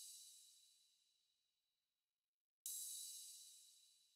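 A quiet ride cymbal sample from a trap drum kit, played alone in FL Studio. A stroke from just before fades out in the first second, then one new stroke about two and a half seconds in rings bright and dies away.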